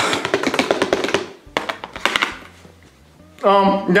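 Peas spilling off an upturned plastic plate, a quick rush of many small pattering clicks, followed by a few sharp taps on the plate as the last peas are knocked loose.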